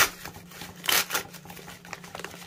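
Plastic packaging rustling and crinkling as it is handled and pulled open, with a cluster of louder crinkles about a second in.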